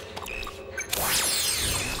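Cartoon sound effect for a quick costume change: a few faint short tones, then about a second in a bright whoosh made of many falling tones that lasts about a second.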